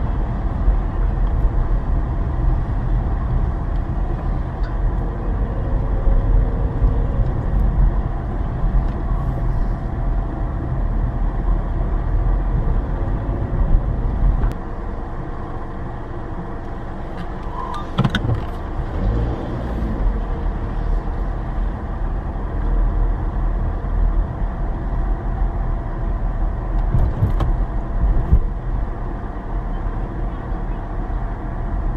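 Car driving slowly, heard from inside the cabin: a steady low rumble of engine and tyres, easing off slightly about halfway through, with a brief sharp knock a little after that.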